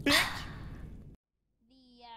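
A breathy rush of noise, like a long exhaled sigh, loud at first and fading away over about a second. After a short silence a woman's voice says 'uh' near the end.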